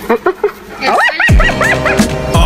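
Spotted hyena giggling: a quick run of high, rising-and-falling whooping calls. A hip hop beat with a deep kick drum comes in just past halfway.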